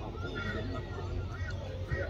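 Voices of players and spectators calling out across an open field, in short high-pitched shouts, over a steady low rumble.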